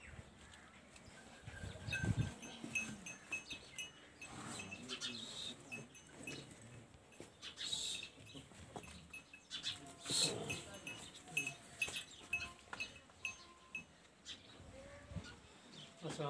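A young female buffalo moving about in its stall, with repeated light clinks throughout and a louder low knock about two seconds in.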